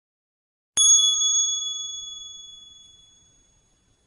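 A single high bell-like ding, struck about a second in and ringing out, fading away over about three seconds.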